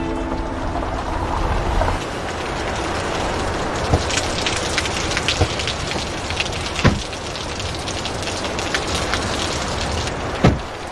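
A steady noisy hiss with many faint sharp ticks and a few louder knocks in the middle stretch.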